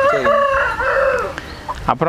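A rooster crowing once, one long call of about a second and a half.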